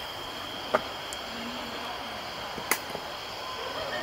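Two short, sharp clicks about two seconds apart, over steady outdoor background noise with a faint high steady tone.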